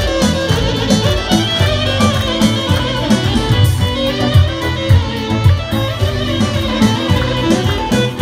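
Live Albanian wedding band music played over a PA: an instrumental dance tune on keyboard, with a bowed-string-like lead over a steady beat.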